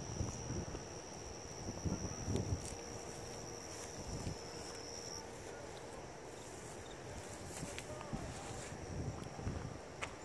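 Wind on a phone microphone and a few soft footsteps on pavement. A faint steady high-pitched tone runs through the first half and stops about five seconds in.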